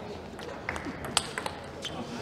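Table tennis ball being hit by rackets and bouncing on the table in a fast rally: a handful of sharp clicks, the loudest about a second in.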